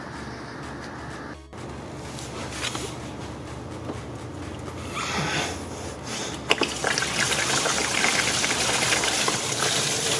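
Engine coolant pouring out of a Porsche Cayenne's disconnected lower radiator hose as it is drained. It starts about halfway through and grows heavier toward the end, with a few sharp clicks of the hose being worked loose.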